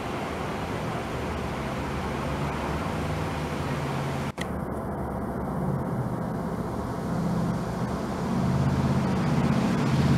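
Steady low rumble of motor-vehicle engine noise, with a brief break a little after four seconds and growing louder over the last two seconds.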